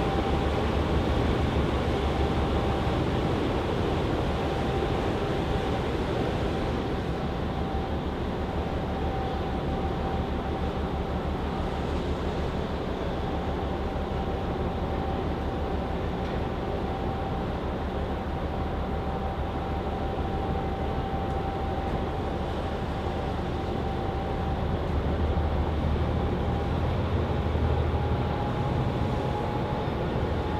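Washington State Ferries MV Cathlamet's diesel propulsion running under way: a steady deep rumble with a thin steady whine on top, growing a little louder near the end.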